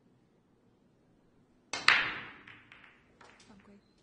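Break-off shot in Chinese eight-ball. The cue tip strikes the cue ball, and a moment later, about two seconds in, the cue ball smashes into the racked balls with a loud crack. About a second and a half of balls clattering against each other and the cushions follows, dying away.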